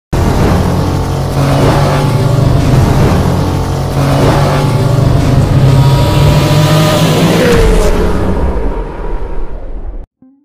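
Loud car engine sound effects, running hard with dense noise, with a falling pitch glide about seven and a half seconds in, fading out over the last two seconds.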